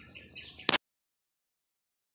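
Faint background hiss, then a single sharp click about two-thirds of a second in, as the recording is stopped, after which the sound cuts to dead silence.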